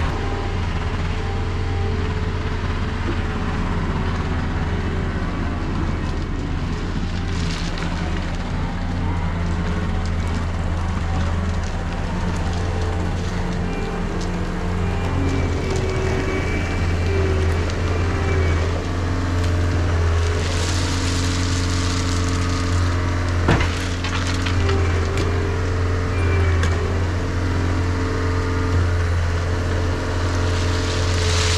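Compact track loader's engine running steadily as it hauls a bucket of gravel, with one sharp knock about two-thirds of the way through. Near the end, gravel starts pouring from the tipped bucket.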